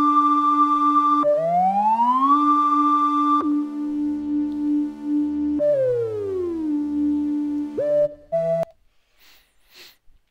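Arturia Jupiter-8 V software synthesizer playing a bright lead patch. It holds single notes joined by smooth pitch-bend slides: a glide up, a step down, a slower glide down, then a few short notes before it stops well before the end. The slides are test bends sent from FL Studio's piano roll through MIDI Shapeshifter, meant to land on the exact target pitch.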